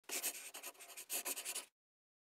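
Quick, scratchy strokes in two short runs, like a pen scribbling, ending abruptly after about a second and a half.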